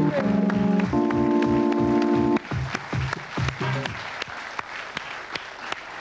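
A short music sting of held chords over a steady kick-drum beat, about three beats a second, cutting off abruptly about two and a half seconds in. A studio audience applauds throughout, and the applause carries on after the music stops.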